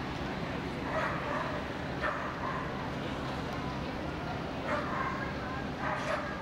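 A dog barking in short, high yips, about four of them spaced a second or more apart, over the steady hum of a large hall.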